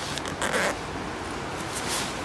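Zipper of a small fabric shoulder bag being pulled open, loudest about half a second in.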